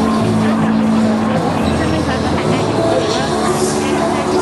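Loud crowd chatter with music from a sound system underneath, its low notes held steady for a second or more at a time.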